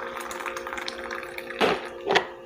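Coffee poured from a thermos jug into a mug: a steady stream of liquid filling the cup, with a brief knock near the end as the pour stops.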